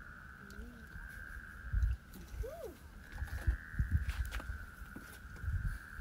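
A continuous high-pitched droning chorus of calling animals, steady throughout, with gusts of wind rumbling on the microphone.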